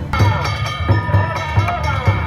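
Danjiri festival music (danjiri-bayashi): a taiko drum keeps a steady beat under repeated sharp strikes of small hand gongs (kane) that ring metallically.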